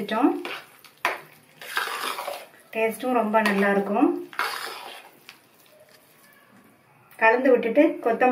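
Spoon stirring thick sambar rice in a stainless steel pressure cooker, with scraping through the rice and a couple of sharp clinks against the pot.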